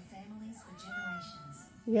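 A ginger domestic cat giving one long meow that rises in pitch and then holds steady, starting about half a second in.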